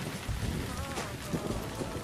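Steady rain noise laid over background music, with a melody line and a low beat under the rain.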